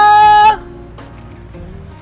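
A man's voice holding a loud sung "ta-daaa" on one steady pitch, which cuts off about half a second in; soft background music continues underneath.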